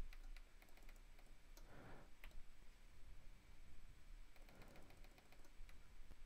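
Faint, scattered clicks from the Casio Privia Pro PX-5S's front-panel data knob and buttons as a name is entered one character at a time.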